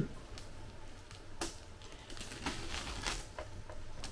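Clear plastic stretch film being peeled off a metal-bodied RC model truck, making soft, scattered crinkles and crackles.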